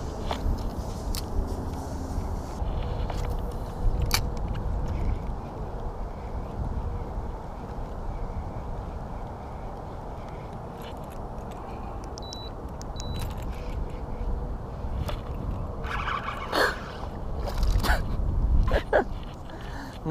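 Steady low rumble of wind on the microphone, with a few sharp clicks, while a small largemouth bass is reeled in on a spinning rod. Near the end come several louder bursts of noise as the fish is brought up out of the water.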